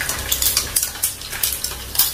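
Pork skin frying in hot oil in a small pan, sizzling with many sharp, irregular clicks and crackles as a utensil stirs it, knocking and scraping against the pan.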